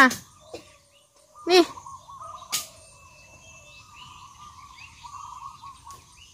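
Faint bird chirps and calls from about a second and a half in to the end, with a single sharp click about two and a half seconds in.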